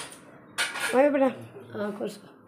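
Steel kitchen utensils clinking and clattering against each other, a short clatter about half a second in.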